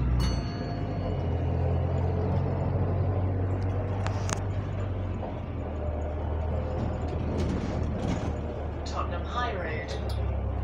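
Double-decker bus interior heard from the lower deck: a steady low hum from the moving bus, with a few brief clicks and rattles and voices near the end.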